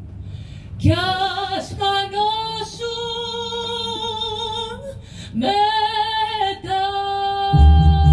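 Woman's voice singing a Greek song in long held notes, almost unaccompanied, with a short break between two sustained phrases. Deep bass notes from the band come in near the end.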